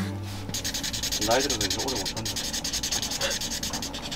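Permanent marker rubbing on cardboard in rapid, even strokes while letters are filled in.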